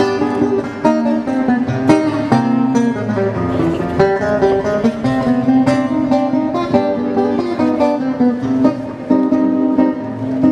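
Acoustic guitar playing an instrumental passage of a milonga, live, with plucked notes and a bass line in a steady rhythm.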